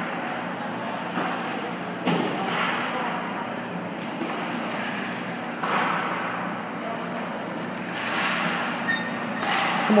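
Echoing indoor ice rink: skates scraping the ice, a few sharp knocks near the start, and background voices.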